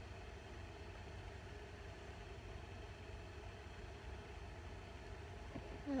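Quiet room tone: a faint, steady low hum under a light hiss, with no distinct sounds.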